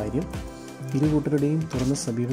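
A voice talking over steady background music, with a short break in the talking about half a second in.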